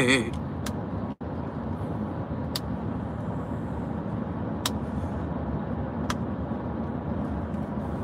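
Steady low road and engine rumble inside a moving car's cabin, with a few faint sharp clicks spread through it and a momentary cut-out about a second in.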